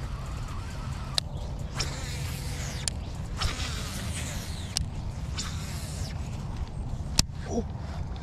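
A baitcasting rod and reel being cast: a whirring from the spool in the middle stretch as line pays out, and several sharp clicks of the reel, over a low steady rumble.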